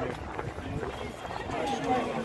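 Speech: a voice says "hey", then quieter talking continues over steady outdoor background noise.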